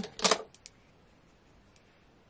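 Makeup brush and powder-blush compact being handled: a short rushing swish as the brush works the blush pan, followed by two faint light clicks, then quiet room tone.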